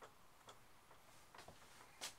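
Near silence: quiet room tone with a few faint, short clicks spread across the two seconds.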